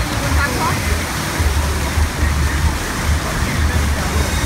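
Rushing, splashing water from a pirate-themed boat-chute water ride, heard over a crowd of voices and a pulsing bass beat of fairground music.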